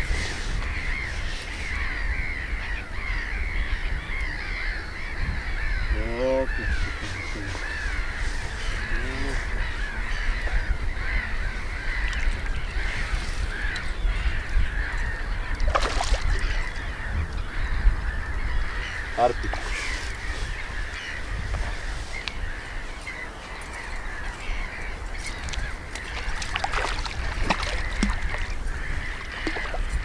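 Birds singing in a dense, continuous chorus of short chirps, with a few louder single calls, over a low rumble. About halfway through there is a brief splash as a hooked fish breaks the surface near the bank.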